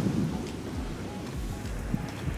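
Low, uneven rumble of wind buffeting a handheld microphone, with a single faint click near the end.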